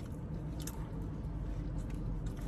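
Close chewing and biting of food, with a couple of soft mouth clicks, over a steady low hum.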